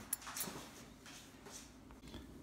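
Faint handling noises of a small carburetor being turned over on a paper towel: a light click just after the start and a few soft rustles.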